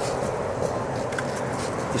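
Steady outdoor background noise with no distinct events.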